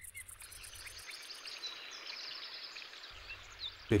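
Faint natural outdoor ambience: a soft, steady hiss with a few short, high bird chirps.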